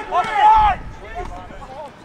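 Men shouting on a rugby field: a loud burst of high-pitched shouting in the first second, then quieter open-field noise.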